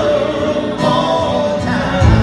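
Live acoustic country band playing a slow ballad: men's voices holding long, wavering sung notes over acoustic guitar, upright bass and lap steel guitar. The bass comes in stronger right at the end.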